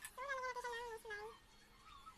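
A high-pitched wavering vocal call lasting nearly a second, followed at once by a short falling one.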